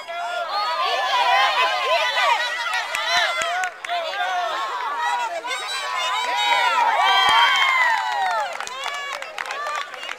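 Many young children's voices shouting and calling over one another, high-pitched and overlapping, with no clear words.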